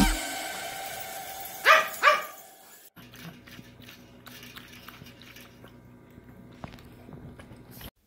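A pug-chihuahua mix barks twice, sharply, about two seconds in. Then comes a quieter stretch of the dog lapping water from a stainless-steel bowl, a run of small repeated slurps that cuts off just before the end.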